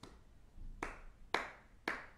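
Hands clapping a steady beat to mark an animated tempo, three claps about half a second apart in the second half.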